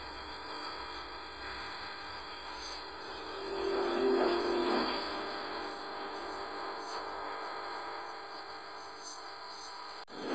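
Steady hum and room noise from a phone recording, with one brief, louder pitched sound swelling and fading about four seconds in.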